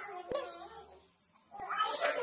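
A baby whimpering in a high, whiny cry that falls in pitch, reacting to the sour taste of a lemon; after a short pause, more high vocal sounds start near the end.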